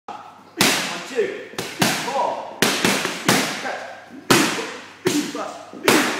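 Boxing gloves punching focus mitts: about nine sharp smacks in quick combinations, some in fast pairs, each followed by a short echo.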